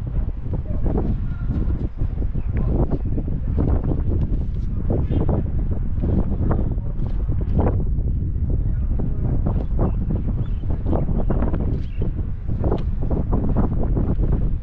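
Wind buffeting the microphone: a loud, continuous low rumble with irregular gusty surges.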